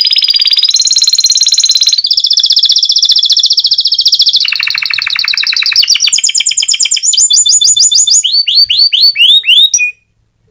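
Canary singing a long, loud song of fast trills, each phrase a note repeated many times a second before switching to a new phrase every second or two. It closes with a run of downward-swept notes, about four a second, and cuts off abruptly just before the end.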